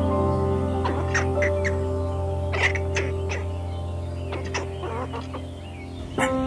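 Chicken clucking in a string of short, separate calls over steady background music.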